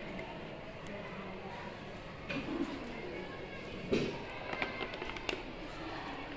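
Indistinct background voices, with a few light clicks or taps about four to five seconds in.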